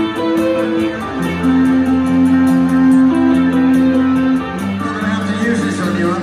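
Live heavy metal band playing a song's slow instrumental intro in an arena: guitars and bass hold sustained chords, which change about a second in and again about four and a half seconds in.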